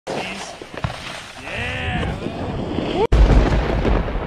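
Snowboard sliding over snow, with voices in the background. About three seconds in it cuts off suddenly into a deep rumbling boom from an intro logo sting.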